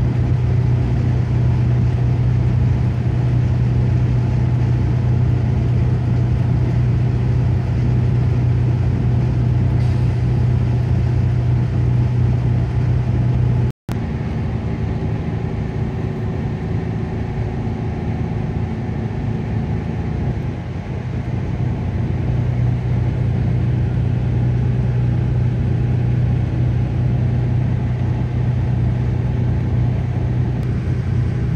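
Steady engine drone and road noise heard from inside a moving coach bus at highway speed, with a strong low hum. The sound cuts out for an instant about halfway through, and the low hum is weaker for several seconds after.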